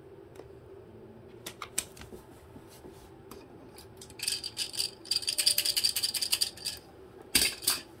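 Cockatoo rattling and clattering a plastic toy: a few scattered clicks, then about two and a half seconds of dense, fast rattling from halfway through, and a short loud clatter near the end.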